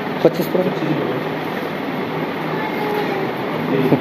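A steady rushing background noise fills the pause in speech. There is a short faint vocal sound near the start and another just before the end.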